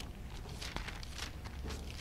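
Bible pages being leafed through by hand: a series of short paper rustles and flicks.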